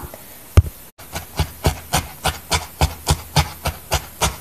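A felting needle stabbing repeatedly through wool into a foam pad: a steady run of short, soft jabs about four a second, starting after a brief gap about a second in.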